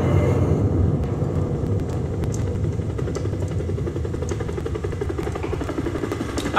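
A steady low rumble with a fine flutter, picked up by a handheld karaoke microphone held close to the mouth.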